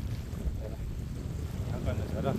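Wind buffeting the microphone in a steady low rumble, with small waves lapping at the lakeshore.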